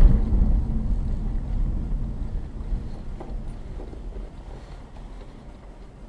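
Low rumble of a car's engine and tyres on the road, heard from inside the cabin, fading steadily as the car slows and comes to a stop at an intersection.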